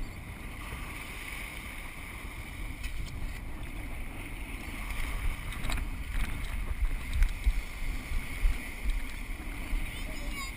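Wind buffeting the microphone over small waves washing onto the beach, growing gustier and louder from about halfway through.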